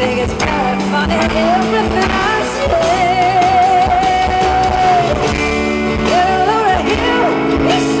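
Live music: a woman singing with acoustic guitar accompaniment, holding one long note with vibrato in the middle, then turning into short melodic runs near the end.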